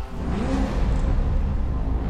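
Deep rumble of a supercar engine swelling up, with a brief rise and fall in pitch about half a second in, mixed with film-score music.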